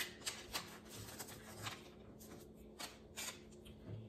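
Sealed wrapper pouch of a BinaxNOW antigen test card being torn open and unwrapped by hand: faint, scattered crinkles and rustles of the packaging.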